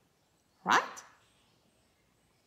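A single spoken word, "Right?", with a sharply rising pitch, followed by near silence.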